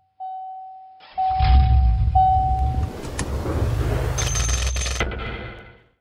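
Car seatbelt warning chime: three single-pitched chimes in a row, each just under a second long, over a low rumble that starts about a second in. Near the end a thin high tone is cut off by a sharp click, and the rumble fades out.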